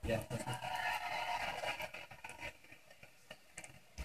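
Quiet television programme sound heard through the set's speaker: a voice answers 'yeah', followed by low, hushed talk that fades about halfway through, leaving a few faint clicks.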